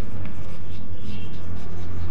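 Chalk scratching across a blackboard as a word is written in short strokes, over a steady low hum.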